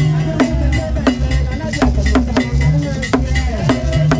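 Nnwomkro, the Akan song style, performed: voices singing over sharp percussive strikes about two to three times a second and a deep, steady bass pulse.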